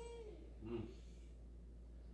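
A short, faint, high-pitched vocal call whose pitch rises and then falls, followed just under a second in by a briefer, lower one.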